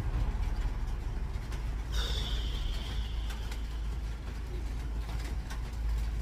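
Outdoor city street noise: a steady low rumble of traffic. About two seconds in, a sudden high hiss starts and fades away over a second or so.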